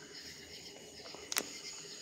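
Crickets chirping steadily in the dark, a high pulsing trill, with one sharp click about one and a half seconds in.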